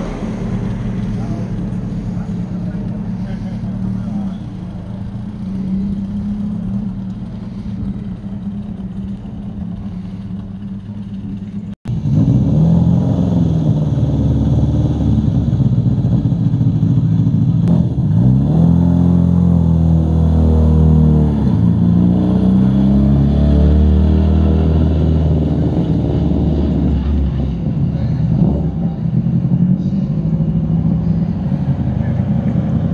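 Rally car engines idling steadily. After a sudden break about twelve seconds in, louder engines rise and fall in pitch as they are revved, most clearly past the middle.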